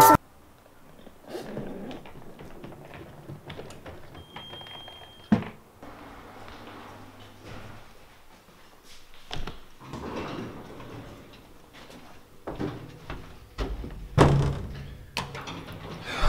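Lift doors sliding and handling noises in a lift lobby: a short high beep lasting about a second, then a sharp knock, with quieter knocks and rustles through the rest.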